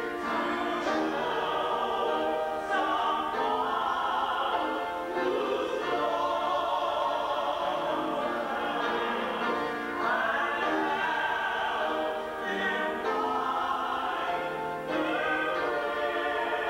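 Several voices singing together in long held sung phrases, a hymn or sacred song.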